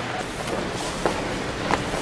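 Steady hiss of room noise with a few faint knocks.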